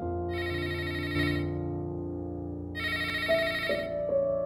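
A telephone ringing twice, each ring a little over a second long with a similar pause between. Soft held piano music sounds underneath.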